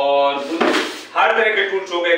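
A brief scraping rustle, about half a second long, as a printed paper leaflet is pulled out from among hand tools on a workbench.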